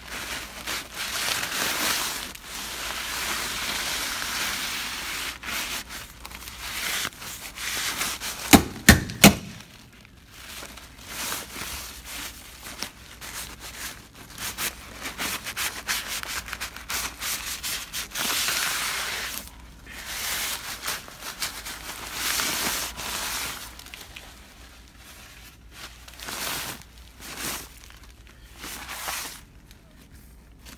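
Kraft paper facing of wall insulation and plastic sheeting rustling and scraping against the phone as it is pushed about inside the wall cavity, in long noisy stretches that come and go. Three sharp knocks sound in quick succession about a third of the way through.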